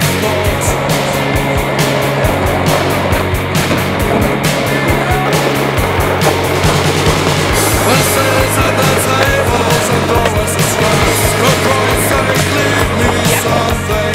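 Rock music with guitars and a steady, driving drum beat. Skateboard wheels can be heard rolling on pavement underneath it.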